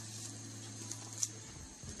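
Quiet room tone with a steady low hum that stops about one and a half seconds in, and a faint tap shortly before it stops.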